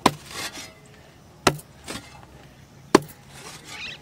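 A pickaxe striking hard, dry, clumpy soil: three sharp blows about a second and a half apart, with fainter noises between the blows.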